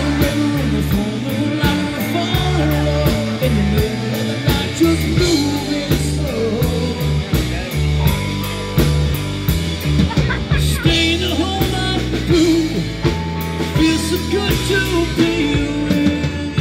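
Live amplified rock band playing: electric guitars and bass over a drum kit, with a steady cymbal beat.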